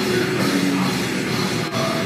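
Heavy metal band playing live, with bass guitar and drum kit in a dense, loud full-band sound and a momentary break near the end.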